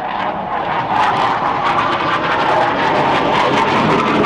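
Military jet aircraft flying past overhead. The jet noise is a steady rush that swells about a second in and stays loud.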